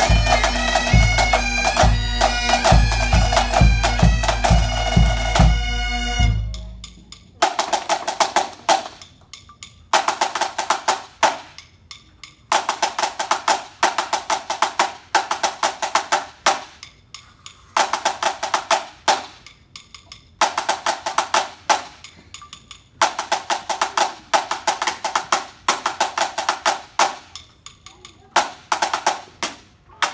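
Highland bagpipes and pipe band drums, bass drum included, finish a snappy 2/4 march, cutting off about six seconds in. A lone pipe band snare drum then plays a solo drum salute: fast rolls and rudiments in short phrases, one to two seconds each, with brief pauses between.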